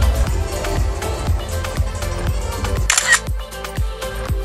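Electronic dance music played loud over a nightclub sound system, with a steady kick drum about twice a second. About three seconds in the deep bass drops out and a short bright burst of hiss sounds, while the kick carries on.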